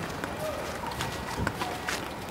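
Soft footsteps of two people walking, over steady outdoor background hiss, with faint voices in the background.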